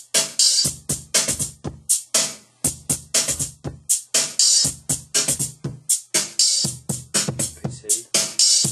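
An unfinished sample-based beat playing from an Akai MPC: sharp drum hits with bright cymbal-like tops over low kicks and bass, a loop that repeats about every two seconds.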